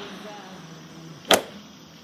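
A single sharp crack just past the middle: a golf club striking a target bird golf ball off a tee on a practice mat.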